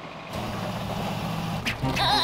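Cartoon sound effect of a delivery van's engine running with a steady low drone that starts about a third of a second in, and a short click near the end.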